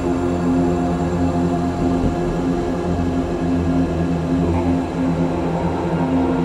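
Dark ambient music: a steady drone of held low tones over a pulsing rumble.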